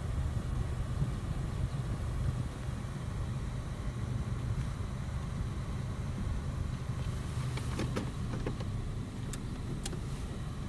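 Toyota car running, heard from inside the cabin: a steady low engine and road rumble. A few light clicks come in the last two or three seconds.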